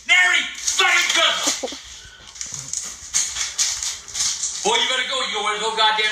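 Raised, shouting voices in two outbursts, one at the start and one again near the end, with a stretch of noisy commotion and no clear voice between them.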